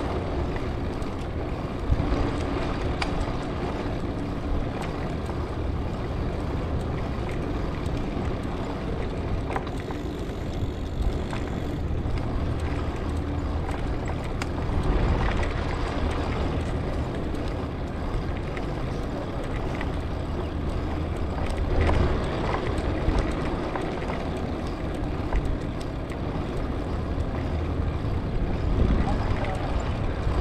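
Steady rumble and wind noise from a bicycle being ridden over herringbone brick paving, with a few small knocks from the bumps.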